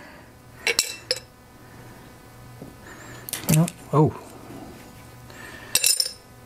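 Small metal carburetor parts being dropped into a glass jar, giving a few short sharp clinks about a second in, around three seconds and near the end.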